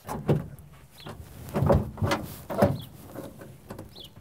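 Creaks and knocks of a car door being unlatched and pushed open, with the occupants shifting in the seats, inside the stalled 1971 Plymouth 'Cuda: about four separate sounds in a few seconds, with no engine running.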